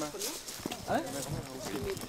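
Indistinct voices of a small group talking at a distance, with a few soft low thumps.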